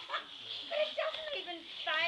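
English Cocker Spaniel giving a string of short, high whimpers and yips, worked up over balloons, with people's voices in the background.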